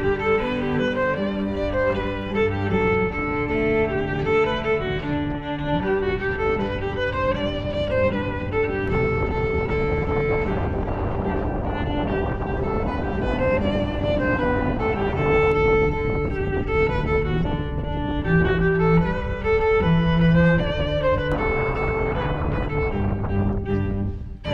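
Background instrumental music: a string tune led by violin, with sustained notes and a moving melody.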